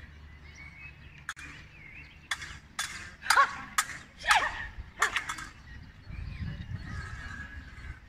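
Swords clashing in a staged fencing bout: a string of sharp metallic clacks, about nine of them, ending in a rapid run of three or four quick strikes.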